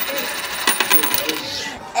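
A coin clinking and rattling on a hard tabletop as it is flicked and spun, with repeated small clicks and a thin metallic ring.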